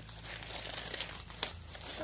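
Soft rustling and crinkling noise, with a couple of sharp clicks about one and a half seconds in.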